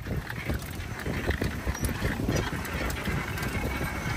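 Pedal quadricycle rolling along a paved street, its frame rattling with irregular knocks over a low rumble.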